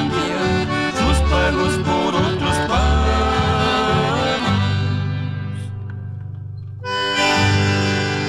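Accordion-led chamamé band playing the closing bars of a song. It lands on a long held chord about halfway through that slowly fades, then a fresh full chord strikes near the end.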